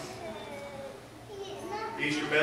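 A faint, high-pitched voice speaking.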